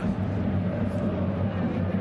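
Football stadium crowd's steady background din, heard through the match broadcast.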